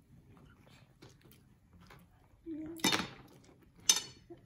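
Two sharp clinks of cutlery against dishes near the end, about a second apart, each ringing briefly.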